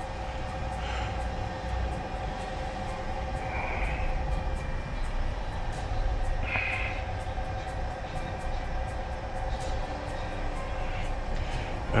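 Steady low mechanical rumble with a faint steady hum, heard inside a truck cab.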